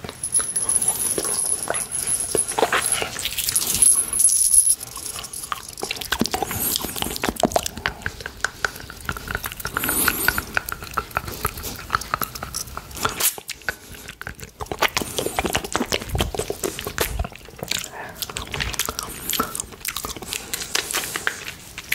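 Close-miked wet mouth sounds of licking and sucking a candy cane: a dense, uneven run of sharp clicks and smacks.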